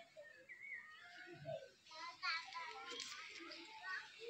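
Indistinct voices talking, too unclear to make out words, louder about halfway through.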